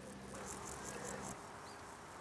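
An insect stridulating in the grass: faint, high-pitched, evenly repeated pulses, about seven a second, over a low steady hum, both cutting off about two-thirds of the way through.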